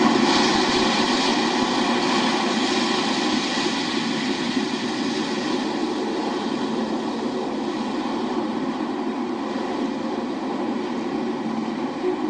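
Steady rushing noise of wind and sea water streaming past a ship's hull. It starts abruptly and eases slightly over the seconds.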